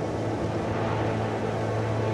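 A steady rushing, wind-like sound effect for flight through the air, over a sustained low music drone.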